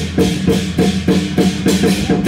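Lion dance percussion band playing: a big drum beaten in quick, even strokes, about five a second, with cymbals crashing and a gong ringing under it.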